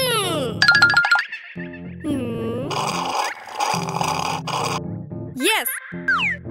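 Bouncy children's cartoon background music with cartoon sound effects. A falling pitch glide comes at the start, a dipping-then-rising wobbly glide about two seconds in, and a quick up-and-down wobble near the end.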